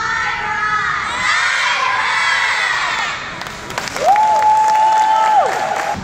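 A group of children shouting and cheering together, many voices at once. About four seconds in, one high voice holds a long call for about a second and a half, rising at its start and dropping at its end. That call is the loudest sound.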